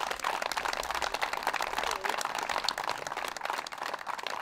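A small crowd applauding, with many hands clapping at once in a dense, steady patter.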